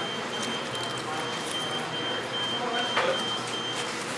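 A high electronic tone sounds steadily, then breaks into a run of short beeps about halfway through, over fast-food restaurant room noise with faint voices in the background and a single clack about three seconds in.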